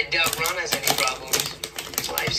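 A rapid, irregular run of sharp clicks or taps, over quiet dialogue.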